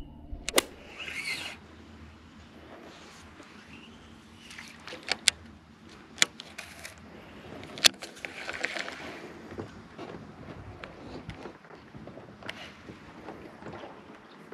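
Scattered sharp clicks and knocks of hands handling gear close to the microphone, the sharpest near the start and about eight seconds in, over a faint steady hiss.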